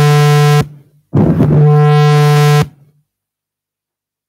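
Loud, steady low electronic buzz from the room's sound system, heard twice: it cuts off about half a second in, returns after a brief gap and stops abruptly about two and a half seconds in. The microphone level has been turned up too high.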